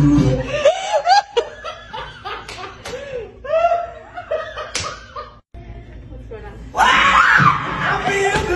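Guitar music cuts out about half a second in. A woman's voice follows, laughing and exclaiming, with a few sharp smacks. The music comes back loud near the end.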